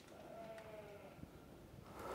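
A sheep bleating faintly once, a short call falling slightly in pitch.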